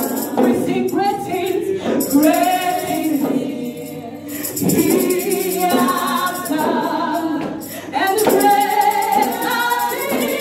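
A woman singing a gospel worship song into a handheld microphone, holding and sliding between long notes, over a steady jingling percussion beat.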